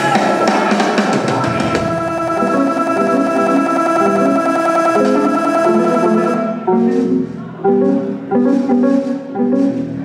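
Live band playing with drums and keyboard: the full band with ringing cymbals until about six and a half seconds in, then the cymbals drop out and short, separated notes are left, played in stops and starts.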